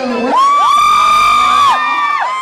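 Audience screaming in long, high-pitched shrieks: several voices overlap, each rising, holding steady for about a second, then falling away.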